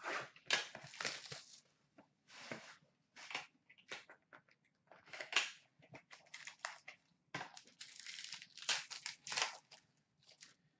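Hockey card pack wrapping being torn open and crinkled by hand, in irregular rustling bursts, with cards being handled.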